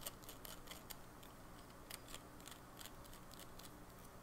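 Faint, irregular light ticks and scratches from a fountain pen being handled over paper.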